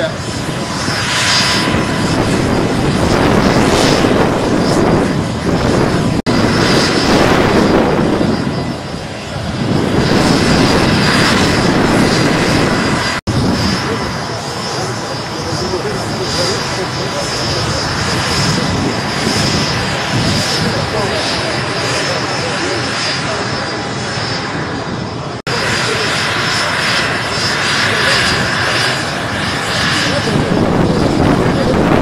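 Mil Mi-8-family military helicopter running on the ground, its turbine and rotor noise steady with a thin high whine, while people's voices mix in. The sound breaks off and resumes abruptly a few times.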